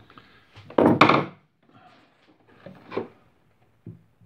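Hand chisel cutting into the wooden bass bridge of a Bechstein piano as the bridge is carved down to its pin holes. There is a loud cut about a second in, a second, quieter cut near three seconds, and a short tap just before the end.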